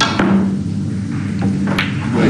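A sharp click of a snooker cue striking the cue ball, then two fainter clicks of balls colliding about a second and a half in, over a low steady musical tone.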